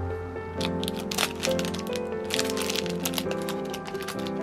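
Clear plastic packaging bag crinkling in the hands as it is handled and opened, in quick clusters of crackles from about half a second in, over background music.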